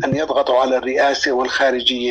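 Speech only: one voice talking without a pause, in a radio broadcast.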